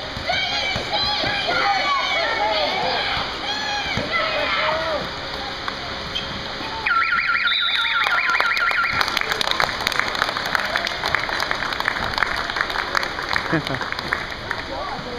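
Voices shouting, then about seven seconds in a gym's electronic game buzzer sounds for about two seconds with a rapid pulsing tone, marking the end of the game. Clapping follows.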